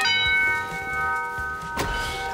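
A doorbell chime is struck, and its bright bell tones ring and fade away over about a second and a half. A sharp click comes near the end.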